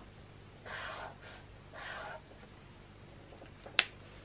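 Two soft scratchy strokes of a Zebra Mildliner marker's tip dragged across mixed media paper, then a single sharp click near the end.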